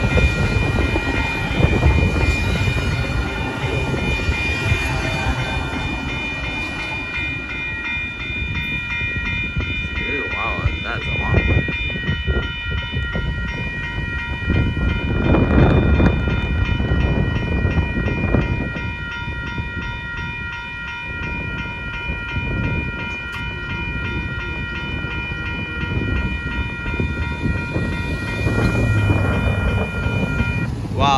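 Railroad grade-crossing warning bell ringing steadily over the rumble and clatter of the last cars of an intermodal freight train. The train noise fades out over the first half, leaving the bell ringing on its own, and a vehicle drives across the crossing near the end.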